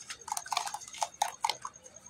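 Hand squeezing and kneading a wet mix of geru (red ochre clay) and sand in a bucket of water: a quick run of small wet squelches, drips and splashes as the slurry runs back into the water.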